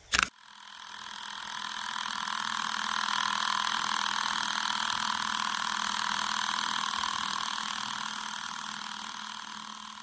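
A short click, then a steady electronic drone of several held tones that swells up over about two seconds, holds, and slowly fades out near the end.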